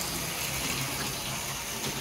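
LEGO Monorail train's battery-powered motor running steadily, a continuous whirr as the train drives along the track.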